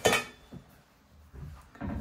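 A single sharp knock with a short ring, as a hard object is set down on a kitchen counter, followed by a few faint taps and handling noises.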